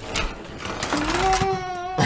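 Sharp clicks and rattles of Lego plastic pieces being handled. From about a second in, a high-pitched voice holds one slightly rising note until the end.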